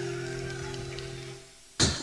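Acoustic guitar chord ringing out and fading, dying away about a second and a half in. A man's voice starts loudly just before the end.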